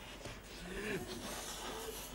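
Two people blowing into rubber balloons to inflate them: faint puffs of breath, with a brief quiet voice sound in the middle.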